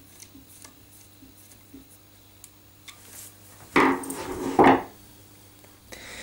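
Small screw being driven by hand with a Pozidriv screwdriver into a plastic block, a string of faint ticks as it turns, then two loud clattering knocks about four seconds in as the tool is handled and set down.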